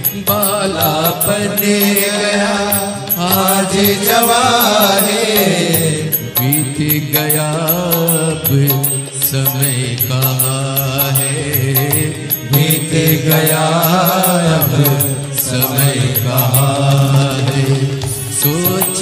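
Hindi devotional bhajan music to Shiva: a wavering melodic line over a steady low tone, with a light regular beat.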